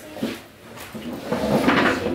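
A short knock, then a scraping, rumbling noise for most of the last second, like a wooden chair being dragged across a wooden floor.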